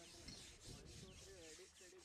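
Faint outdoor ambience: a quick, even pulsing chirr, about six pulses a second, with faint distant voices underneath.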